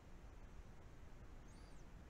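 Near silence: room tone, with one faint, short, high-pitched chirp that rises and falls near the end.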